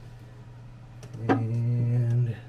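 A steady low hum underneath, then about a second in a man's voice held on one low flat note, a drawn-out hesitation sound, lasting about a second.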